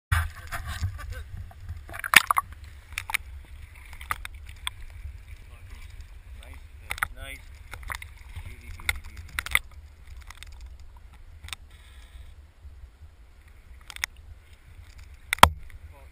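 Muffled low rumble of river current heard through a submerged camera's waterproof housing, with scattered sharp clicks and knocks, the loudest near the end.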